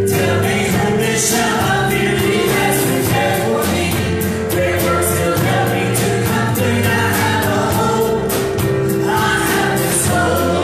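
A trio of women singing a gospel worship song together, backed by a live band with a steady drum beat.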